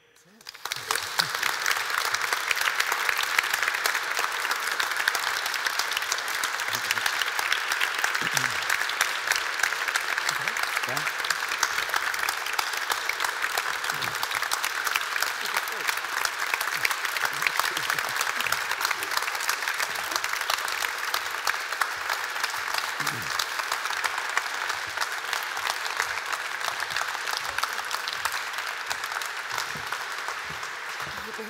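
Audience applauding: dense clapping that starts within the first second and eases a little near the end.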